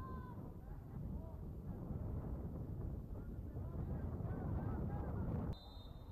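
Wind rumbling on the microphone under distant shouts from players on the field. It cuts off abruptly about five and a half seconds in, and a brief high tone follows.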